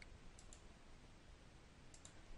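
Near silence with a few faint computer mouse clicks: two close together about half a second in, and another near the end.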